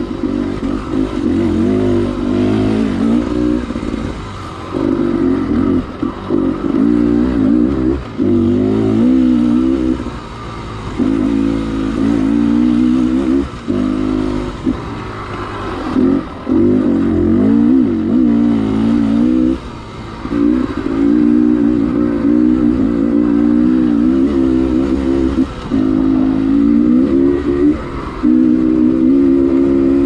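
Dirt bike engine running under load on rough singletrack. The throttle rolls on and off, so the engine note keeps rising and falling and drops away briefly every few seconds.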